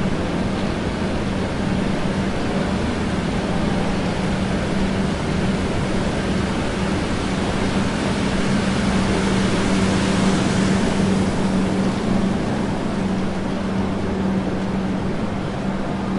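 Railway station ambience: the steady rumble and noise of a busy station, with a constant low hum. A hissing swell builds and fades about halfway through.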